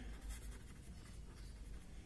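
Faint scratching of a pen on paper as a word is written in short strokes.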